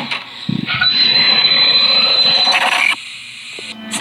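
Horror-film sound effect: a low thud, then about two seconds of harsh hissing noise with a thin high whine over it, cutting off suddenly, followed by a quieter stretch.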